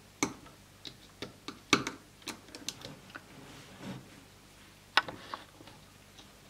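Light, irregular clicks and taps of a metal-tipped loom hook and rubber bands against the clear plastic pegs of a Rainbow Loom as bands are lifted and looped, about a dozen in all, the sharpest a little under two seconds in and at about five seconds.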